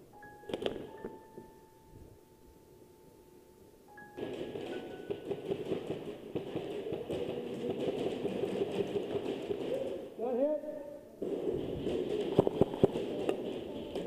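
Indistinct, muffled voices, with a quick run of sharp clicks from airsoft guns firing near the end.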